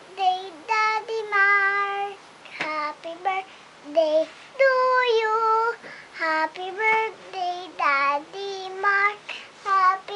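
A young girl singing unaccompanied in a high voice, with several long held notes.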